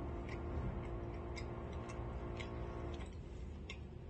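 A person chewing a mouthful of soft coconut donut with the mouth closed, making small moist clicks about twice a second. A faint steady hum runs underneath and stops about three seconds in.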